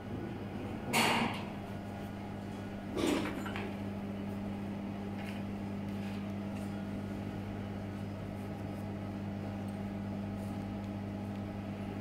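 Steady low electrical hum from a powered-on 2000 W laser welding and cleaning machine, with two brief noises about one and three seconds in.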